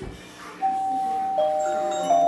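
Doorbell chime ringing two notes: a higher note a little over half a second in, then a lower note about a second later, both ringing on.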